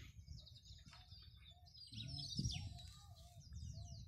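Several small birds chirping and twittering, many short high calls overlapping throughout. A low rumble swells about two seconds in.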